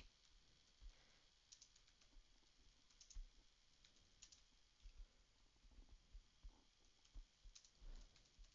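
Faint, irregular clicks of a computer keyboard and mouse, a dozen or so scattered taps over an otherwise near-silent room.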